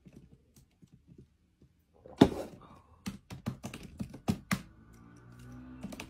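A single loud thump about two seconds in, then a run of sharp taps on a laptop keyboard, about eight keystrokes in a second and a half. Faint music comes in near the end.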